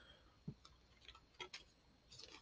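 Near silence with a few faint clicks, one about half a second in and a couple more around a second and a half: a hand turning a glass brandy bottle and handling its paper hang tag.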